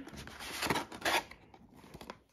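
A small cardboard box being pulled out of its tight compartment in an advent calendar, cardboard scraping against cardboard in a few short scrapes over the first second or so, then fading.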